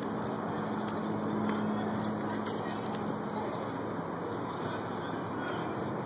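Steady outdoor background noise with a low hum that fades out about three and a half seconds in.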